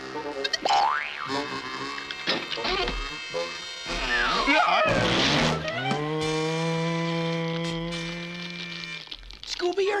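Cartoon sound effects over music: a quick rising whistle slide and boings, then falling glides, then a long, steady moan.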